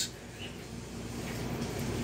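Danby DDW621WDB countertop dishwasher running, heard only as a faint, steady wash noise with a low hum.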